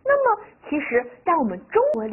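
A woman speaking Chinese in a lively voice, her pitch sliding up and down from syllable to syllable.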